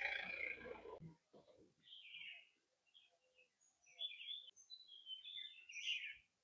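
Small birds chirping faintly in short, scattered high calls. A louder, denser sound cuts off abruptly about a second in.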